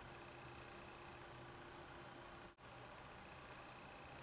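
Near silence: faint room tone with a low steady hum, which briefly drops out about two and a half seconds in.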